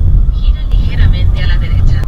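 Car on the move, heard from inside the cabin: a loud, steady low rumble of road and wind noise.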